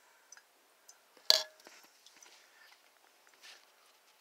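Quiet room tone with a few faint ticks, broken about a second in by one sharp knock with a short ring after it.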